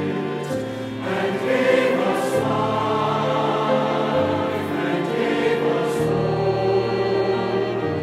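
Mixed choir singing with a string ensemble accompanying. Held chords change every second or two, with crisp sibilants from the sung words.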